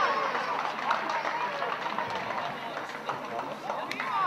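Several men's voices shouting and calling at once around a football pitch, overlapping and rising and falling in pitch. A sharp knock sounds near the end.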